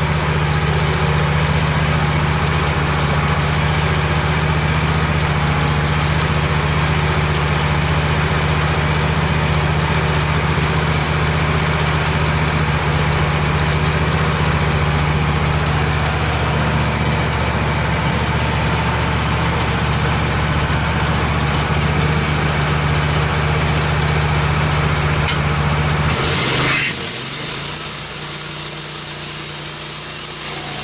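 Wood-Mizer LT15 band sawmill's engine idling steadily with a low, even hum. Near the end the sound changes sharply as the band blade is engaged and starts cutting into the red oak log, a high hissing rasp of sawing taking over.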